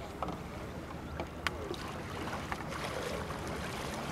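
Paddles of a two-person sprint kayak pulling away from a pontoon, with a few sharp knocks and clicks of blades and hull and the splash of strokes, over a steady low rumble.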